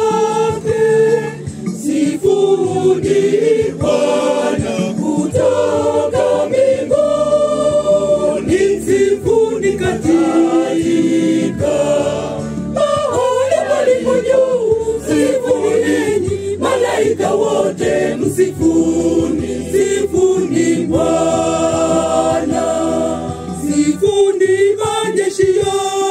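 Church choir singing a hymn together in harmony, several voices holding and moving between notes without a break.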